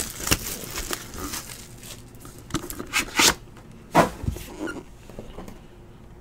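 Hands handling a shrink-wrapped trading card box: scattered rustles and light knocks, with a louder scratchy rustle of the plastic wrap about three seconds in.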